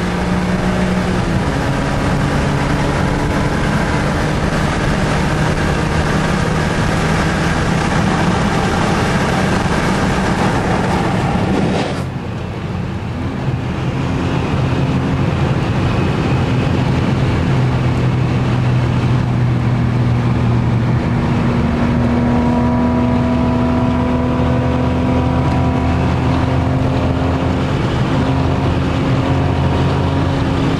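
BMW E36 M3's 3.0-litre straight-six engine heard from inside the cabin at motorway speed, over road and wind noise. The sound changes abruptly about halfway through, and after that the engine note climbs slowly as the car pulls harder.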